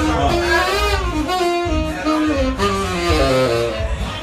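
Saxophone playing a short melodic phrase of held notes that climbs and then steps down in pitch, over a low pulsing rumble.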